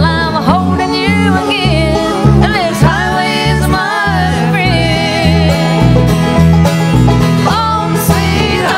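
Bluegrass band playing, with banjo and guitar over a bass line that steps from note to note, and a lead melody sliding between notes above.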